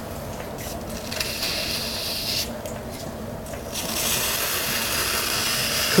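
Wooden throwing stick scraping wet clay away from the base of a pot turning on a potter's wheel, in two spells of scraping, about a second in and again from about four seconds, the second one louder.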